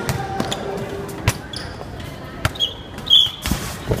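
Bubble-football play on a gym court: a series of sharp thumps and knocks from the inflatable bumper balls and ball, with two short high squeaks in the second half and voices behind.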